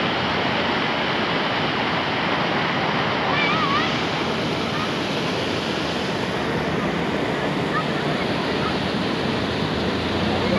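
Swollen, rain-fed river in flood: a loud, steady rush of turbulent floodwater churning through the channel.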